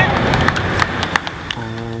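Steady rushing outdoor noise with a few sharp clicks. About one and a half seconds in, a man's voice begins with a long drawn-out syllable.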